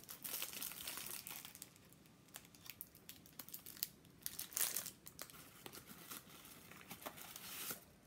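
Tissue paper crinkling and rustling as it is pulled out of a small paper box, in short irregular rustles, louder about halfway through and again near the end.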